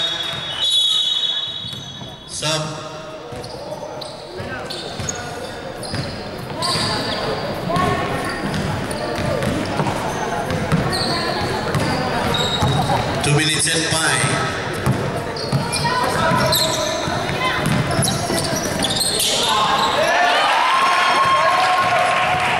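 Basketball being dribbled during a game, with players and spectators calling out and chattering, echoing in a large sports hall.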